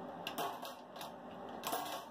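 A couple of light clicks from bingo balls and a wire bingo cage being handled, one faint and one sharper near the end.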